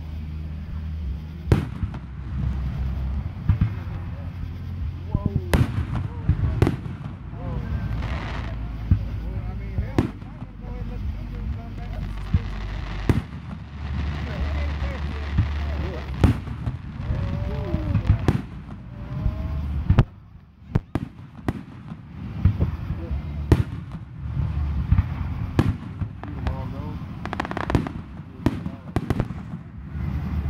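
Aerial fireworks going off: a string of sharp bangs and cracks at irregular intervals over a low rumble, with a short lull about two-thirds of the way through before the bangs resume.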